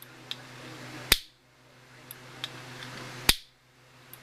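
Potato-gun sparker made from a grill lighter's piezo igniter being fired twice: two sharp snapping clicks about two seconds apart, each a spark jumping the electrode gap. Fainter clicks come shortly before each snap.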